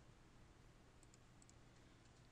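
Near silence with a low hum and a few faint computer mouse clicks, in two quick pairs about a second in.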